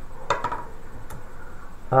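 A few light clicks of game pieces being handled on a tabletop, one shortly after the start and another about a second in.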